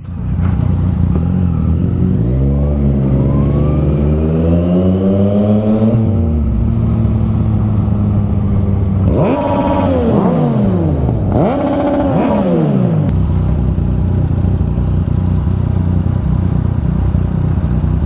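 Yamaha FZ-09's three-cylinder engine pulling away, its pitch climbing for the first few seconds and then holding steady at cruising speed. About halfway through, the revs fall in two sweeps as it slows.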